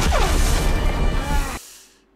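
Animated-series soundtrack: a loud crash with a falling tone after it, over music. The sound fades out near the end.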